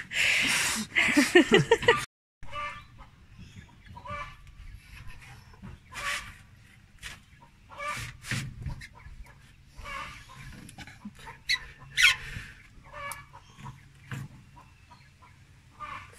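Chickens clucking close by, loudest in the first two seconds, where the sound stops abruptly, then a few short calls over scattered light clicks and knocks of hands working a rubber radiator hose onto its metal fitting.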